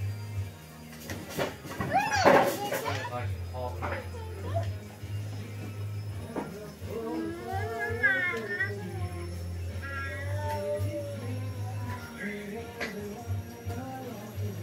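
Young child's high-pitched squeal about two seconds in, then babbling sounds, over steady background music, with a few light knocks.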